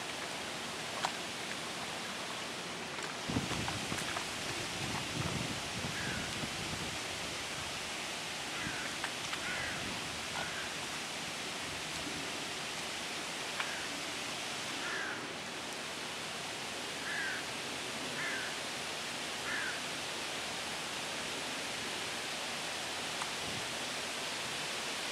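Outdoor background: a steady, even hiss, with a low rumble a few seconds in and a string of short, high bird chirps between about six and twenty seconds in.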